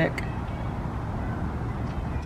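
Steady outdoor background noise, a low hum of distant traffic.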